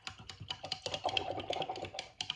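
Something being scraped off a surface by hand: a fast, irregular run of clicks and scratches.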